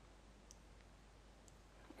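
Near silence: room tone with a few faint computer mouse clicks, about half a second in and again near the middle to later part.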